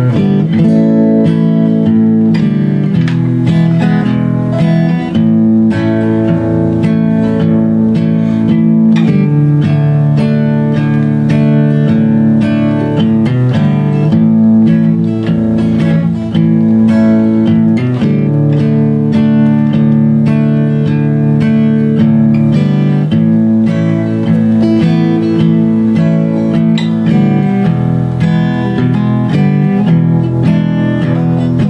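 Acoustic guitar playing an instrumental break between sung verses of a slow country song, chords strummed steadily and changing every few seconds.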